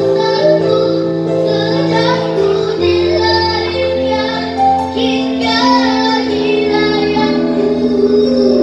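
A boy singing a slow ballad into a microphone, holding long notes, over live keyboard and guitar accompaniment.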